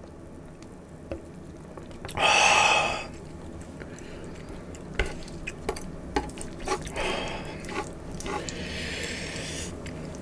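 A loud, sharp breath lasting under a second, about two seconds in. It is followed by light clicks and taps of metal chopsticks picking up pork belly from a wooden board, and a softer breath near the end.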